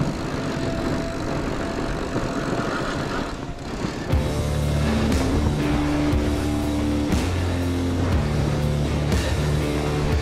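Steady rushing noise of a fat bike riding over a groomed snow trail, with wind on the chest-mounted camera. About four seconds in, background music with long held low notes comes in and carries on over the riding noise.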